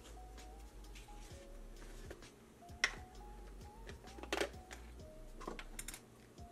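Soft background music playing a simple, gently stepping melody, with a few sharp clicks and knocks from a spice jar and a metal measuring spoon being handled.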